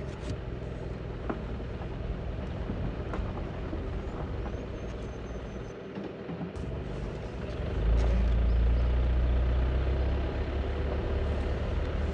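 A vehicle's engine and tyres on a dirt road: a steady low rumble as it turns slowly, dipping briefly near six seconds and growing louder from about eight seconds in as it pulls away.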